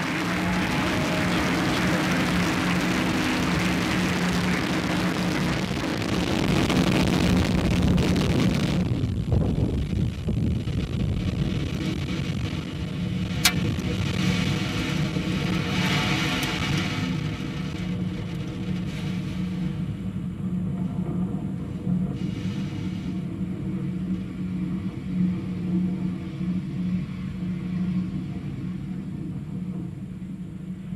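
Falcon 9 first stage's nine Merlin 1D engines during ascent. For about the first nine seconds it is a loud, dense rocket roar. It then turns duller and lower, a steady rumble that fades slowly as the rocket climbs away.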